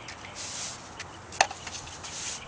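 Push-broom bristles scraping across concrete steps in repeated hissing strokes, with a sharp clack about one and a half seconds in as a broom knocks against the step.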